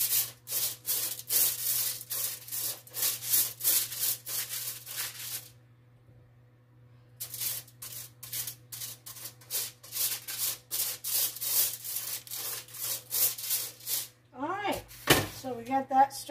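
Silicone pastry brush stroked quickly back and forth over aluminium foil on a sheet pan, spreading oil: rapid rubbing strokes about four a second, with a pause of about two seconds in the middle.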